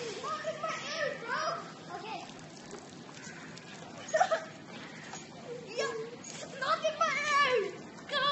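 Children's high-pitched voices shouting and calling while they play, in several bursts, loudest near the end.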